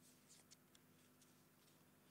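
Near silence: room tone with a faint steady hum and a few faint, brief ticks in the first second or so.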